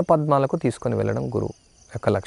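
A man speaking in Telugu, in the steady delivery of a lecture. His voice stops about one and a half seconds in. A faint, steady high-pitched tone sits under the voice throughout.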